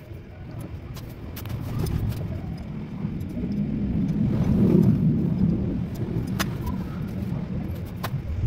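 A motor vehicle passing by: a low rumble that builds to a peak about halfway through and then fades. A single sharp click near the end.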